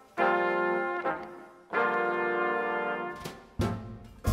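Big-band brass section of trumpets and trombones playing two held chords, each about a second long, with a short accent and a low note near the end.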